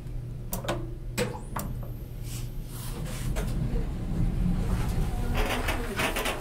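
Sharp clicks from elevator car buttons being pressed in the first two seconds, over a steady low hum. Then the Westinghouse hydraulic elevator's sliding door closes with a rough, rumbling run of a couple of seconds.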